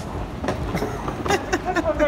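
Airport terminal background noise: a steady low rumble with indistinct voices and a few scattered clicks.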